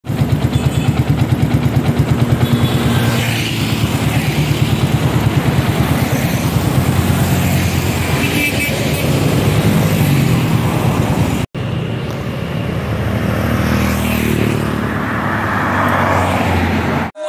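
Motorcycles and a car passing close by on a road, their engines running with road noise. The sound cuts out for an instant about eleven and a half seconds in.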